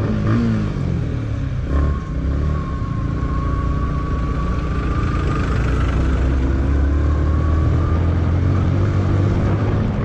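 Yamaha motorcycle engine pulling as the bike speeds up on a dirt road, its pitch climbing slowly after a brief dip near two seconds in, with wind noise rushing over the microphone.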